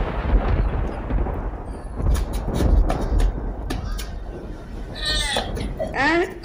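Thunder sound effect: a heavy low rumble that fades over the first couple of seconds, with a few sharp cracks after it. Near the end comes a high, wavering cry.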